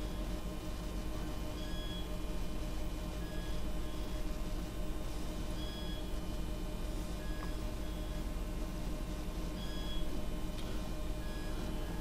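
Low, steady background hum and hiss with several faint steady tones, and faint short beeps now and then.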